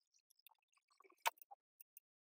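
Faint, sparse soft clicks and squishy blips, with one sharper click a little past a second in: a dense makeup brush working liquid blush into the skin of the cheek.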